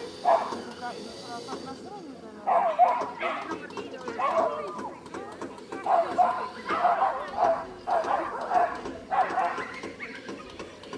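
Dog barking repeatedly in short bursts, with a pause early on, then barks coming roughly once a second.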